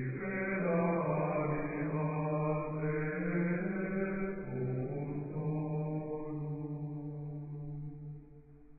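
Slow chant sung in unison, moving by steps between long held notes, as background music.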